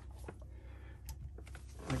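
Low steady hum with two faint metallic clicks from large channel-lock pliers working on a raw water pump's tapered drive gear.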